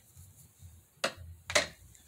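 Two short, sharp clicks about half a second apart, the second louder, from handling the blanket's plastic packaging.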